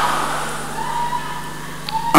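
Low background noise of a large, crowded hall with a steady low hum from the sound system, slowly dying away across a pause in amplified preaching.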